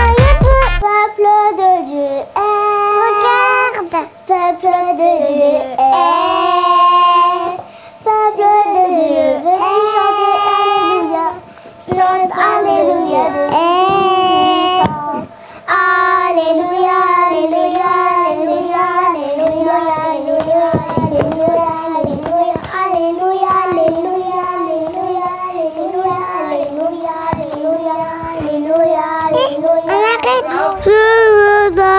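A child singing a melody alone with no instruments, in short phrases separated by brief pauses, then in a longer unbroken stretch from about halfway on.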